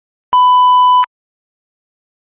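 A single electronic bleep, a steady pure-sounding tone like a censor bleep. It starts a moment in, holds for about three-quarters of a second and cuts off suddenly.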